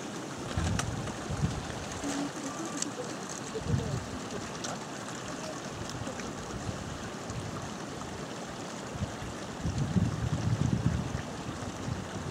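Steady rushing outdoor background noise with a few faint clicks, and low muffled bursts about ten seconds in.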